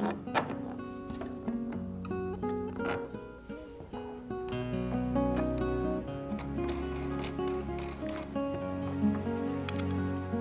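Instrumental background music with plucked acoustic-guitar notes.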